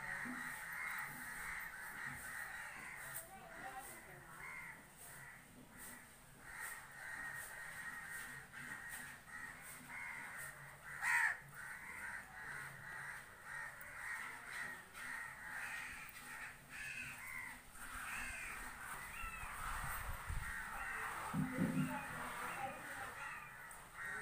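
Crows cawing repeatedly, with a louder sharp sound about eleven seconds in.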